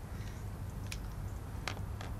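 Outdoor course ambience: a steady low rumble with two short, faint clicks about a second apart.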